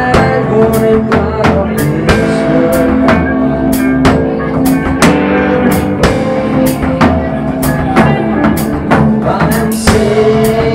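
Blues-rock power trio playing live: electric guitar, bass guitar and drum kit, with the drums keeping a steady beat of about two hits a second.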